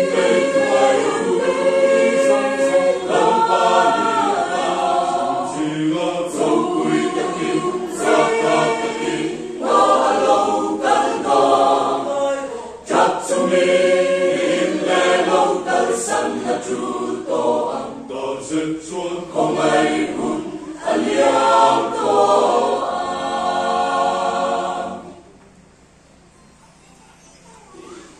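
Mixed choir of men and women singing together in phrases with short breaths between them; the singing stops near the end.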